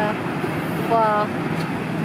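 Steady road traffic noise with a woman's voice saying one short word about a second in.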